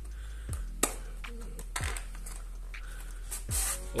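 A small white cardboard box being handled and worked open by hand: light scrapes and taps, with a sharp click a little under a second in and a few softer ones after.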